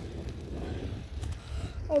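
Steady low rumble on a moving phone microphone, with a faint murmur of voices; a spoken word starts at the very end.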